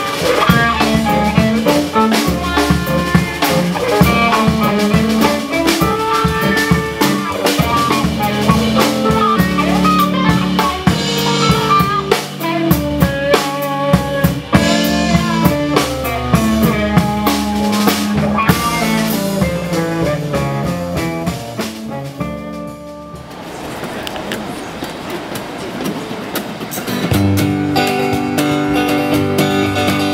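Live band of keyboard, upright bass, electric guitar and drum kit playing an instrumental passage. The music stops about two-thirds of the way through, leaving a few seconds of even noise without notes, and acoustic guitar strumming starts near the end.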